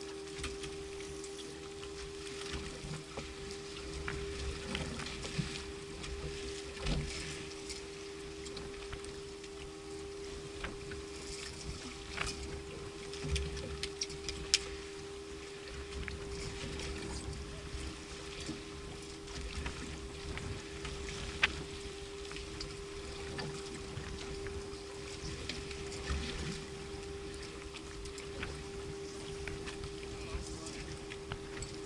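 Boat at rest on open water: a steady mechanical hum runs throughout, over water against the hull and a low rumble, with scattered sharp clicks and knocks from gear on deck.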